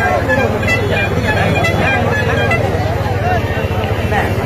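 A crowd of men talking and shouting over one another in a heated argument, over a steady low rumble.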